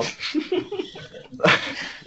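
A person's brief laughter and breathing: a few short voiced bursts, then a loud breathy exhale about one and a half seconds in.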